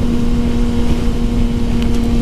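Kawasaki ZX-6R 636 inline-four engine running at a steady freeway cruise, one unchanging tone, with heavy wind noise on the microphone. A faint tick comes near the end.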